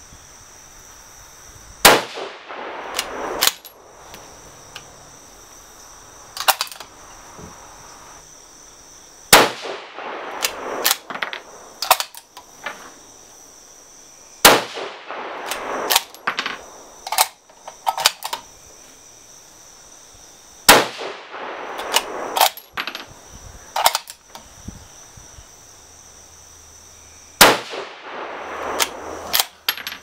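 Five rifle shots from a 6.5x47 Lapua bolt-action rifle, spaced about five to seven seconds apart, each ringing out briefly. Each shot is followed by a quick series of metallic clicks as the bolt is worked and the spent case is ejected.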